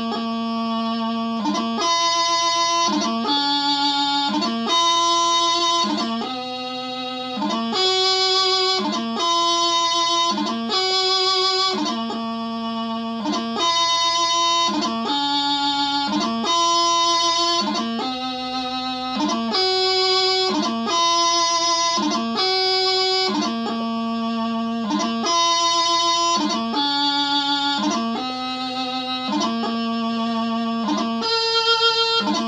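Highland bagpipe practice chanter playing a slow piobaireachd melody, one held note after another without drones.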